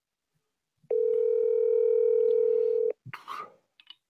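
A single steady electronic beep from a mobile phone, held for about two seconds from about a second in and then cutting off sharply, followed by a brief handling noise.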